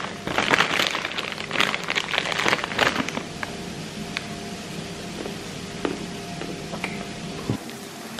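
Plastic snack bag crinkling as it is handled, dense crackling for about the first three seconds. It then turns quieter, leaving a faint steady hum and a few scattered clicks.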